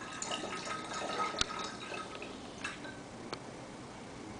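Methoxide solution poured into a glass Erlenmeyer flask of oil, trickling and splashing for about two seconds, with a sharp glass clink partway through and a couple of light clicks afterwards.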